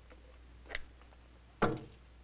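A plastic canteen is set down on a shelf: a light click, then a louder knock about a second and a half in. A steady low hum runs underneath.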